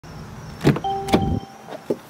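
Mercedes-Benz car door being unlatched and opened: two sharp clunks about half a second apart, with a short steady tone between them, then a couple of lighter clicks near the end.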